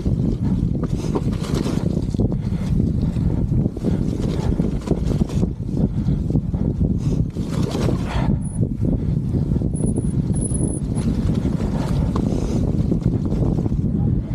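Wind buffeting an action camera's microphone over the rumble and rattle of a mountain bike rolling along a rutted grassy singletrack, with scattered small knocks from the bike over bumps.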